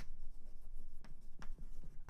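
Chalk writing on a blackboard: a few sharp taps and strokes of the chalk against the board.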